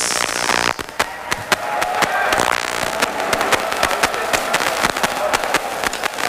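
Audience applauding, with many sharp individual claps standing out irregularly against a steady wash of clapping and crowd noise.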